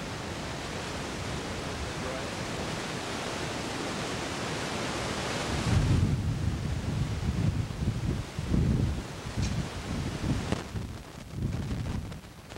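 Wind blowing across a camcorder's built-in microphone: an even hiss for about the first half, then gusty low rumbling buffets from about six seconds in.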